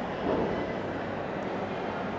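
Steady background noise with a low hum, swelling slightly about a third of a second in.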